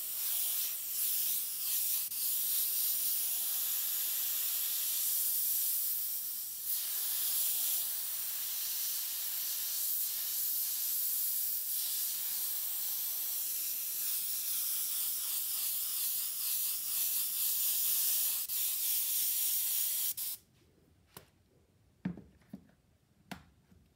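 Siphon-feed airbrush hissing steadily as it sprays paint onto a T-shirt, with a brief break in the air flow about six seconds in. The hiss cuts off suddenly near the end, followed by a couple of faint clicks.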